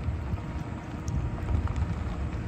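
2020 Ford F-250's 6.2-litre gas V8 running low and steady as the pickup rolls slowly past, with wind rumbling on the microphone.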